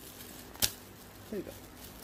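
A single sharp snip of scissors cutting through the knot of a plastic bag, about two-thirds of a second in, with light plastic rustling around it.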